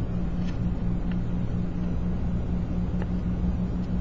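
Steady low background hum with no speech, joined by a few faint small clicks.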